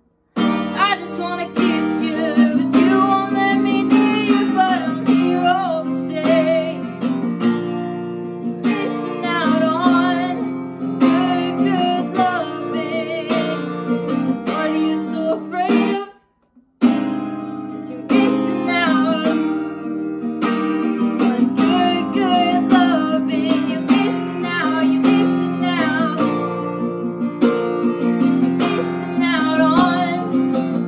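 Steel-string acoustic guitar strummed steadily in a slow song, with a voice singing over it. The sound cuts out abruptly twice: for a moment at the start and for about a second around the middle.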